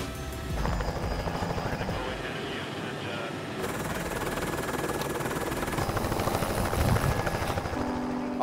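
Helicopter running close by. About half a second in, a steady cabin drone gives way to a dense, even rush of rotor and turbine noise.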